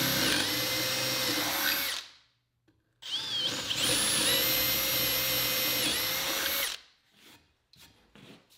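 Makita 18-volt cordless drill boring holes in a softwood 2x4 with a brad point bit: two runs of steady motor whine, a short one of about two seconds, then after a brief gap a longer one of about four seconds that starts with a rising whine as it spins up.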